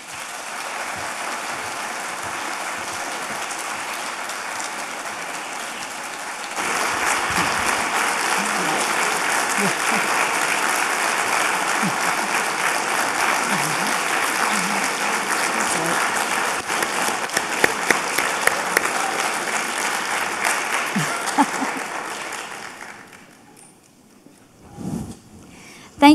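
A large audience applauding at the close of a speech, the clapping growing louder about six seconds in and dying away near the end.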